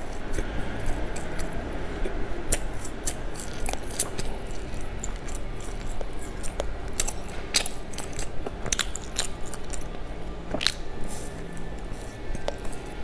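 Close-miked chewing of a soft baked snack, with wet mouth smacks and short clicks at irregular moments throughout.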